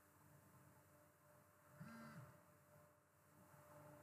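Near silence: faint room tone, with one brief, faint pitched sound about two seconds in.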